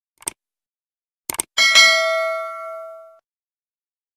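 Subscribe-button animation sound effect: a click, then two quick clicks, then a bell ding. The ding rings out with several steady tones and fades over about a second and a half.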